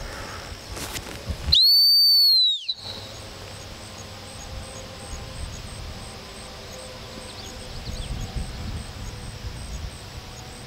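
A single long blast on a dog-training whistle, about a second long: a high, steady tone that rises slightly and dips as it cuts off.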